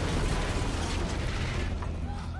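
Dense, loud explosion sound effect with rumbling and mechanical clatter across the whole range, strong in the lows, thinning out near the end.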